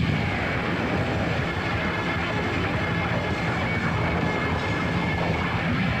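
Live punk rock band holding a sustained, noisy passage without a beat: a wash of distorted electric guitar with a faint high feedback whine, heard off an old cassette tape.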